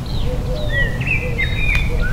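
Small birds chirping in quick, short calls that slide up and down in pitch, several overlapping, over a steady low rumble.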